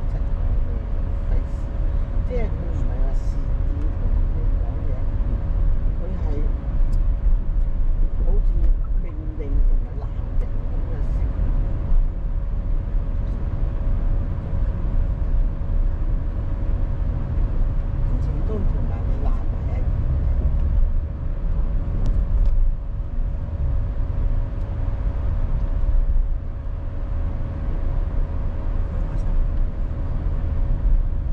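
Steady low rumble of a car driving in slow city traffic, heard from inside the cabin, with quiet voices talking underneath.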